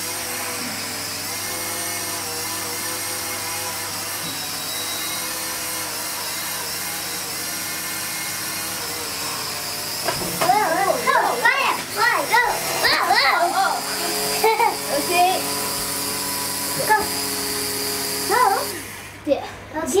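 Air Hogs Vectron Wave toy flying saucer hovering, its small electric motor and propeller giving a steady whine that shifts a little in pitch. The whine cuts off near the end as the toy comes down. Children's excited voices join it from about halfway.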